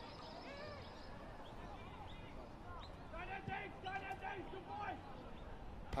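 Faint open-air ambience of a football ground: small birds chirping repeatedly, with faint distant shouting voices of players calling on the field about halfway through.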